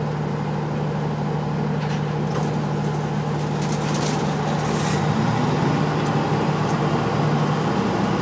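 Pramac GSW560V silenced diesel generator sets running with a steady low hum. About five seconds in, a second engine note rises in pitch as the just-started generator comes up to speed.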